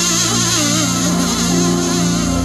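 Live band music in a slow, unhurried introduction: a wavering, vibrato-laden melody line over a steady held drone, with no beat.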